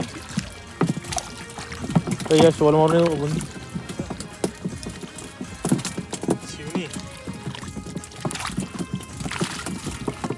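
Hands splashing and squelching in shallow water and mud while groping for and picking a fish out of a fishing net, in short, irregular splashes.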